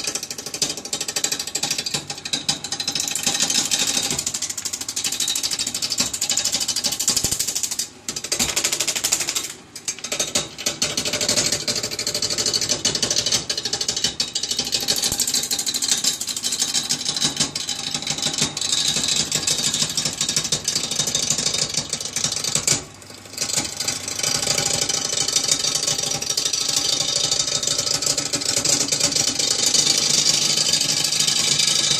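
Wood lathe spinning a firewood blank while a hand turning tool cuts it down to a cylinder: a loud, rapid chattering rasp of steel cutting wood. The cutting breaks off briefly three times, about eight, ten and twenty-three seconds in.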